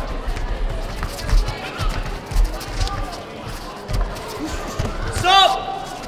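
Dull low thuds from the kickboxing bout on the foam mats, repeated throughout, under the voices and shouts of spectators in a sports hall. A loud high-pitched shout comes about five seconds in.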